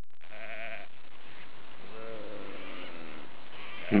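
Sheep bleating faintly twice: a short, quavering call near the start and a longer, lower one about halfway through. A loud, close bleat starts right at the end.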